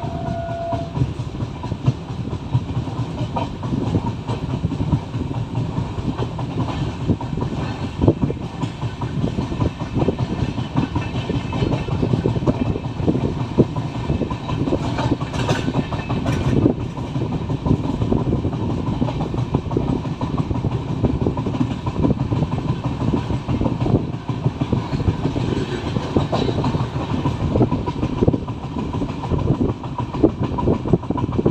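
Express passenger train running at speed, heard from an open coach doorway: a steady rumble with a constant fast rattle of wheels over the track. A short high tone sounds right at the start.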